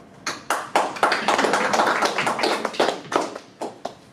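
Audience applauding: a few separate claps, then dense clapping that thins out and stops just before the end.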